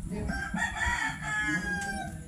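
Rooster crowing: one long crow that begins about a third of a second in and slides down in pitch at the end.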